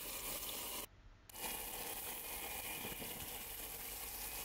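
Fish fillets sizzling steadily in olive oil in a frying pan on a camping gas stove. The sizzle drops out briefly about a second in, then carries on.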